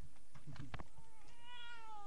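Newborn baby giving one short cry: a single wail of about a second, falling slightly in pitch, after a couple of light handling knocks.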